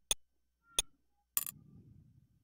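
Computer mouse clicks: three short, sharp clicks, the last a quick double about one and a half seconds in, as a menu is opened and an application is quit.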